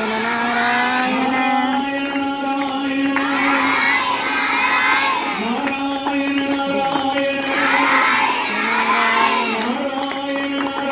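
A large group of children singing a Hindu devotional bhajan together, loud and lively, their voices swelling in repeated bursts over steady held notes.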